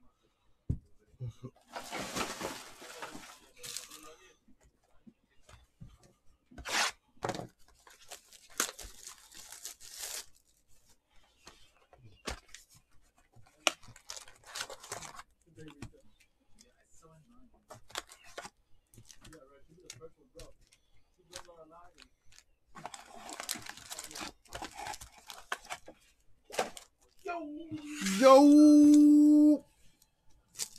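Trading cards and foil pack wrappers being handled: short bursts of rustling, crinkling and tearing with quiet gaps between. Near the end comes a loud held pitched tone lasting about two seconds.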